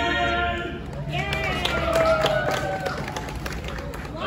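An a cappella barbershop quartet holds its final chord, which cuts off just under a second in. Scattered hand-clapping and voices from the listeners follow.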